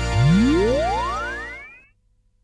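The closing chord of a TV drama's theme music rings out while a sound effect glides steeply upward in pitch over it. Both fade away together shortly before the end.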